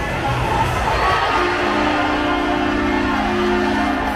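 Arena crowd cheering and shouting. About a second and a half in, a sustained low chord starts on the arena sound system and is held to the end.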